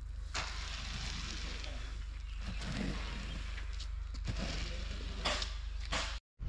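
Steady, dry rustle of sun-dried coffee cherries being moved about, beginning about half a second in.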